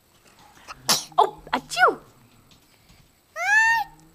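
High-pitched squeals and vocal noises from a small child: a sharp burst about a second in, a few short sliding squeaks, then one longer arched squeal near the end.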